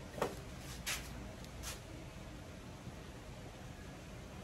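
A few short knocks and clicks of hand tools and hardware being handled on a wooden frame, three in the first two seconds, over a low steady background.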